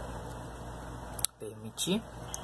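Steady low hum and hiss of room tone. About a second and a quarter in comes a sharp click and a brief drop in level, followed near the end by two short snatches of a man's voice.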